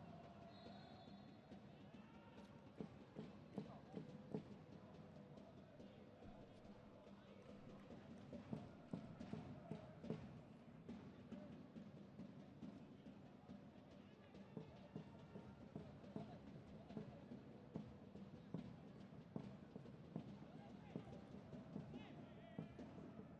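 Faint football stadium ambience from the pitch-side microphones: distant voices and shouts, with scattered sharp knocks throughout.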